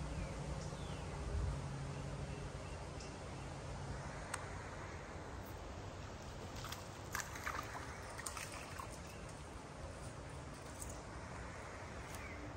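Quiet creek-bank ambience: a faint steady hiss of slow-moving water and outdoors, with a low hum fading out in the first few seconds. A few light clicks come near the middle, while a spinning reel is being worked.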